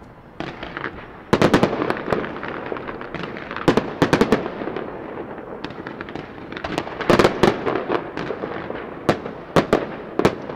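Fireworks crackling in rapid clusters of sharp pops, four bursts a couple of seconds apart.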